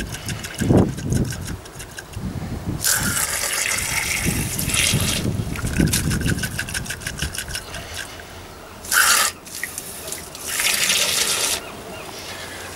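Water from a garden-hose spray gun gushing into and over a brass Trangia spirit burner and splashing off it, coming in several bursts as the burner is rinsed out with clean water.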